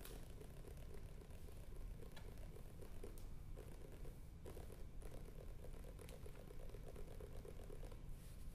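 Fingers drumming fast on a book held in the lap: a quick, faint patter of soft taps that grows denser in the second half.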